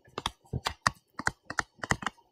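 Stylus pen tapping and clicking on a tablet screen while handwriting, a quick, uneven run of small clicks at about six a second.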